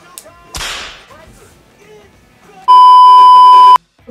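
A brief swish about half a second in, then a loud, steady one-second censor bleep: a pure electronic tone around 1 kHz that starts and stops abruptly, typical of a bleep laid over a swear word.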